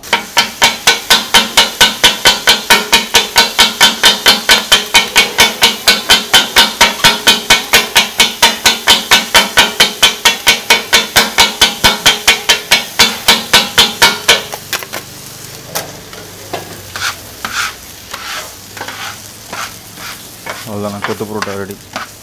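Two flat steel blades chopping shredded parotta and egg on a flat griddle, kothu-parotta style: a fast, even clatter of metal on metal, about four or five strikes a second. About two-thirds of the way through the chopping stops and gives way to scattered taps and scrapes as the food is gathered together, with a light sizzle underneath.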